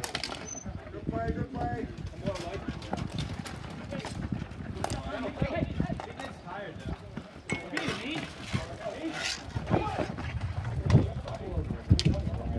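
Ball hockey play on a plastic tile court: irregular clacks and knocks of sticks and ball, mixed with players' indistinct shouts.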